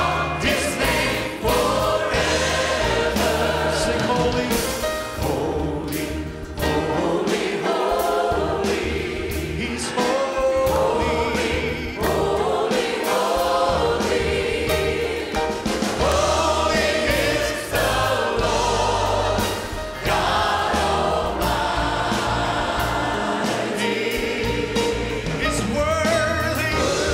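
Church praise team and choir singing a gospel worship song, with male lead voices on microphones over the full choir, accompanied by a live band with a steady beat.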